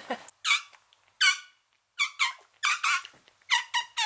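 A person making a run of short, high-pitched squeaky sounds with the mouth, about eight in an uneven rhythm, several falling in pitch.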